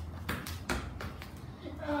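A few sharp knocks on a tiled floor, from a football or bare feet, over a steady low hum.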